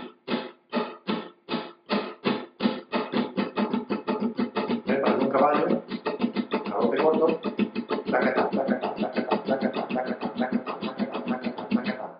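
Flamenco guitar rasgueado in the 'caballo' pattern: ring finger down, index down, index up across the strings. It starts slowly with separate strums and speeds up to a fast, even run of strokes from about four seconds in, on one unchanging chord.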